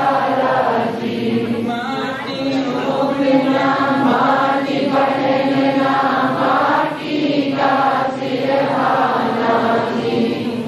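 A congregation chanting a devotional song together, many voices singing without a break.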